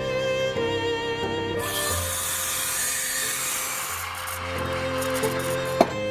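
Violin background music, with an espresso machine's steam wand hissing as milk is frothed in a steel jug for about three seconds from about a second and a half in. A sharp knock near the end.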